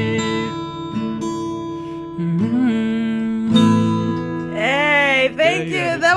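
Acoustic guitar with chords strummed and left to ring, fresh chords struck twice in the middle. A man sings a short line near the end.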